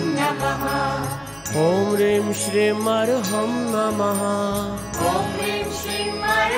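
Devotional mantra music: a voice holds one long, wavering note over a sustained low instrumental drone, with light rhythmic percussion ticking above.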